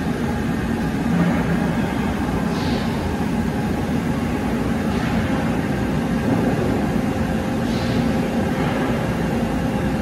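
Steady low rumble and hum of running machinery, an even mechanical background noise with a faint steady tone, and two brief faint hisses about three and eight seconds in.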